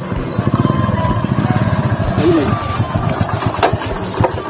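Motorcycle engine running as the bike rides along, a fast, even beat of exhaust pulses under a steady hiss.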